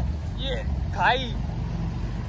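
Small motor scooter engine running steadily at low speed while riding through shallow flood water. Two short spoken words come over it.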